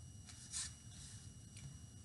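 Quiet indoor room tone with a faint steady hum and thin high whine, and one brief soft noise about half a second in.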